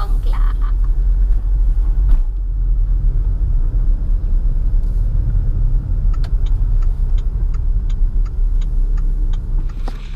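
Proton Iriz driving on the road, heard inside the cabin: a steady low rumble of engine and tyres, with a single knock about two seconds in. From about six seconds a regular light ticking runs at roughly three a second and stops shortly before the end.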